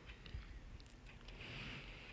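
Faint crackling and sizzling from a tomato, onion and herb base cooking in an aluminium pot with ghee melting into it, with a few small clicks.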